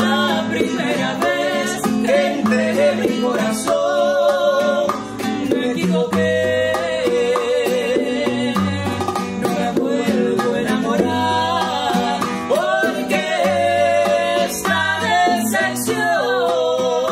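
Live acoustic performance: a woman sings a Spanish-language ballad, accompanied by a strummed and plucked acoustic guitar and hand-played bongos.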